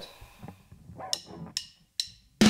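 Percussive count-in: a few sharp clicks about half a second apart, counting in the band's recorded track.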